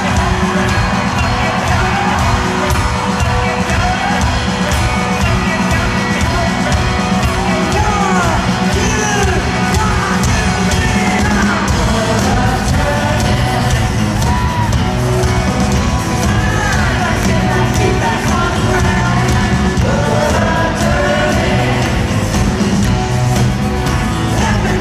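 Live rock drum solo on a full drum kit, a dense unbroken run of drum and cymbal hits, with whoops and shouts over it. It is heard loud from among the audience in an arena.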